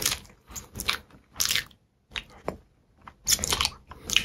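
Close-miked chewing and biting of a mouthful of instant noodles, in irregular bursts with short pauses. The busiest, loudest run of chews comes near the end.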